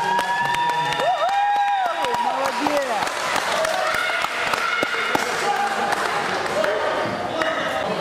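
Several voices shouting across a sports hall, some calls drawn out and held, mostly in the first three seconds, over a run of short thuds.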